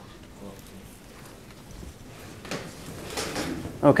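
Faint, distant voices and room noise in a lecture hall, then a few soft knocks and rustles in the last second and a half, just before a man's amplified voice starts near the end.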